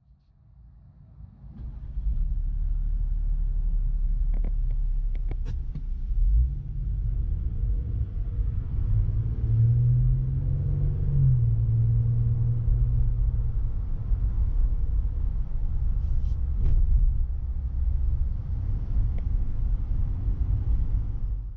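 Cabin sound of a Jeep Wrangler JL Rubicon's 3.6-litre Pentastar V6 on the move, with road rumble under it. The engine note rises in pitch about 6 seconds in as the Jeep accelerates, then settles back after about 11 seconds. There are a few faint clicks.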